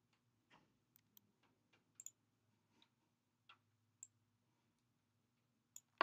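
Near silence: room tone with a few faint, scattered clicks of a computer mouse, two of them close together about two seconds in.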